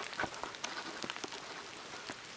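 Rain falling on wet grass: a steady hiss scattered with many short drop ticks.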